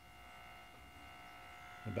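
Faint, steady electrical interference buzz made of several fixed tones, heard on the crystal set while it is tuned between stations; its origin is unknown.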